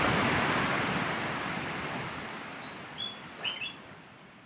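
A wash of surf-like noise, loudest at the start and slowly fading away, with a few short, high bird chirps over it in the second half.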